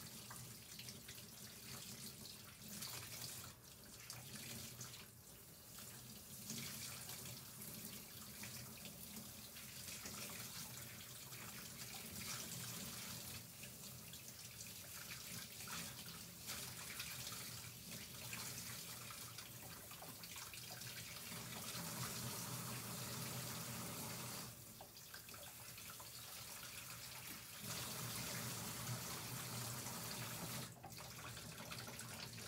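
Steady rushing noise over a low hum, dipping briefly a few times.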